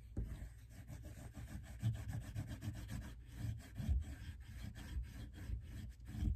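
A dark blue oil pastel rubbed back and forth on construction paper while colouring in an area, making a soft scratchy rubbing in quick, repeated strokes.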